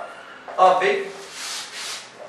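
Marker pen rubbing across a whiteboard while writing, a dry hiss lasting about a second in the second half.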